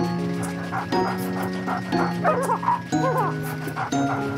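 Bouncy children's-song music, with a cartoon puppy barking in short, high yips several times from about two seconds in.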